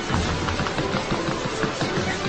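Rapid hand-work on a counter: many quick taps and paper rustles in a fast, uneven patter, over a steady low hum.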